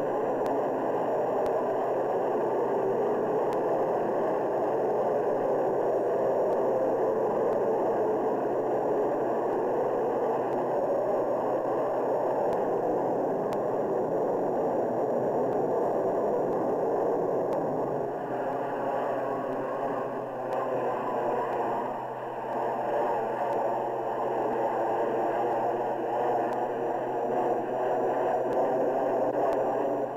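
Grumman F-14A's twin Pratt & Whitney TF30 turbofans running at full thrust in afterburner as the jet takes off and climbs away, a steady loud rush of jet noise. From about eighteen seconds in the noise takes on a wavering, phasing quality as the aircraft recedes.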